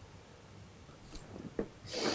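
Faint handling sounds: a few small clicks and rubbing as a syringe's blunt needle is drawn out of the fill hole of a metal rebuildable atomiser tank and the tank is handled.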